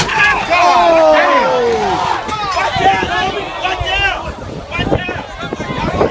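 Crowd chatter: many voices talking and calling out over one another, loud and close.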